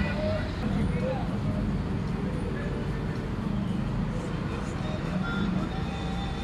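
Steady low rumble of street traffic, with faint voices of people in the background.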